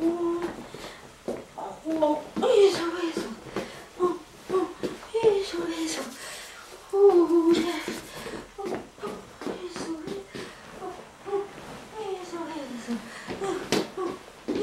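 A person's voice vocalizing wordless, sing-song syllables, pitch sliding up and down with a few long downward slides, plus a sharp knock near the end.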